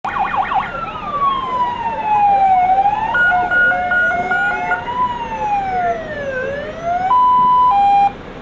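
Sirens of several fire service vehicles passing in convoy, overlapping: a fast yelp at first, long slow rising and falling wails, and a two-tone hi-lo alternation in the middle, ending in a steady held tone that drops to a lower one.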